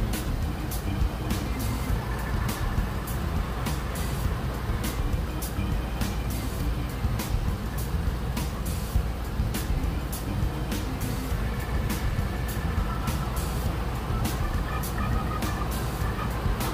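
A vehicle's engine idling at a standstill, heard from inside the cabin as a steady low rumble, with music playing over it with a quick, even beat.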